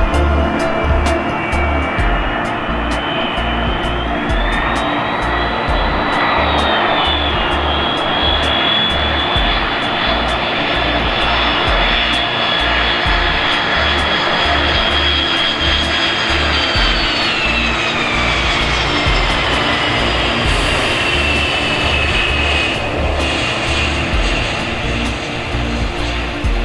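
Boeing 747 freighter's four jet engines whining on approach to land, the whine's pitch dropping about two-thirds of the way through as the jet passes by. Background music with a steady beat plays over it.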